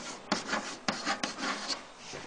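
Writing on a board: a quick run of short, scratchy strokes as example words are written out.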